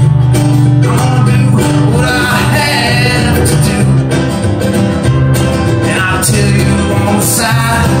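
Live acoustic string band (mandolin, acoustic guitar and upright bass) playing an uptempo country-bluegrass song. This is an instrumental stretch between sung verses, with the plucked strings carrying the tune over a steady bass line.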